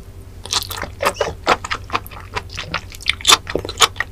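Close-miked biting and chewing of raw giant sea squirt flesh. It comes as a quick, irregular series of sharp mouth sounds, starting about half a second in, with the loudest bites near the end.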